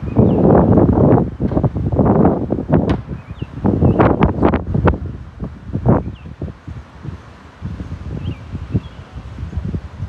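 Loud rustling and scraping with sharp knocks and clicks close to the microphone, starting abruptly and heaviest over the first six seconds, then easing into weaker, scattered bursts.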